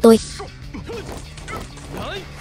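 Film fight sound: a group of men shouting as they charge, with punch and impact sound effects over background music.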